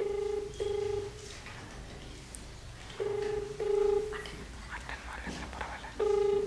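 A mobile phone on speaker plays the ringback tone of an outgoing call: a low steady double ring, two short bursts close together, sounding twice about three seconds apart. The called phone is ringing and has not yet been answered.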